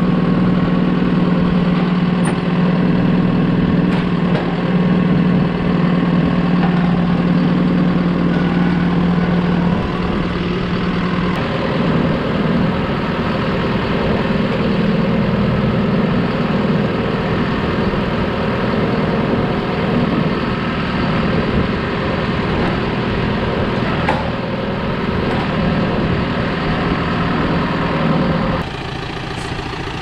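John Deere loader tractor's diesel engine running: a steady hum for the first eleven seconds or so, then more uneven while the loader handles the bales. It drops quieter near the end.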